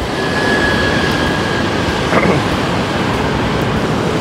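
Steady outdoor noise of street traffic with wind on the microphone, and a short laugh about two seconds in.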